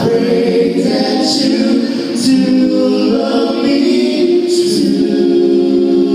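A male vocal group singing a slow song live in close harmony, holding long notes, amplified through a PA system.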